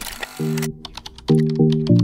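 Short intro jingle of brief electronic chord stabs, one about half a second in and three in quick succession near the end, mixed with rapid sharp clicks like typing.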